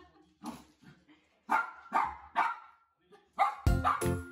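Bichon Frise barking, a string of short barks, the loudest three about halfway through. Music starts near the end.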